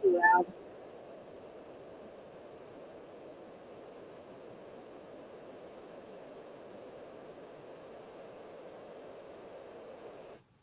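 A brief voice sound at the very start, then a steady, faint background hum of room noise with no rhythm or events, which cuts out abruptly just after the end.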